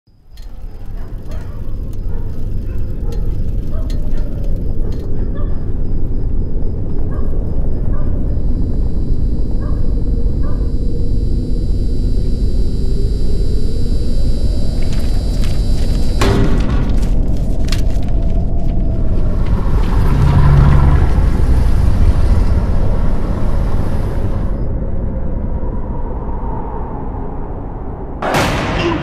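Cinematic intro sound design: a heavy low rumbling drone with thin high ringing tones above it, a sharp hit about sixteen seconds in, then a swell that peaks a few seconds later and eases off near the end.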